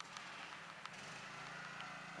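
Faint steady engine hum, with a few light clicks.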